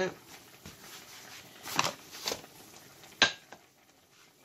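Kitchen handling on a cutting board: three sharp knocks, the third near the end the loudest, as pasta dough and a wooden rolling pin are set down for rolling out.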